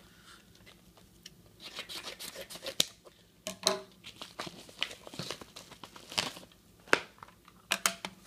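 Paper padded mailer envelopes being handled and torn open: crinkling paper and tearing, broken by several sharp clicks and snaps, starting about a second and a half in.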